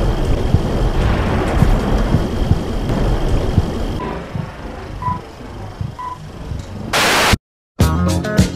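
Retro film-leader countdown sound effects: a dense, crackling hiss like old film or TV static, then three short beeps a second apart as the countdown numbers tick down. A brief burst of loud static cuts to silence, and funk-disco music starts right at the end.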